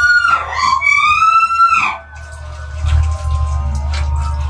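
Two long, high-pitched wavering screams, the second rising and then falling and breaking off about two seconds in. A low droning ambient soundtrack carries on underneath and is left alone after the screams stop.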